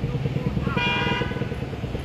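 Street traffic: a motor vehicle engine running steadily close by, with a short car horn toot about a second in.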